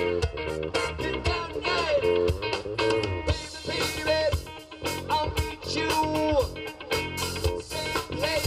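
Live band playing an upbeat song: electric guitar and bass over a steady drum beat, with some notes sliding in pitch.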